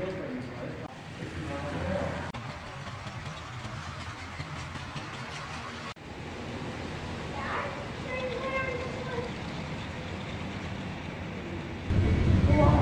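Indistinct background voices over a steady low hum in a large room. The sound dips abruptly about halfway through.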